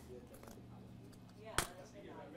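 A single sharp click about one and a half seconds in, against faint room tone.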